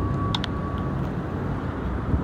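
Steady low rumble of city traffic, with a faint thin high tone that stops about halfway through and a light click near the start.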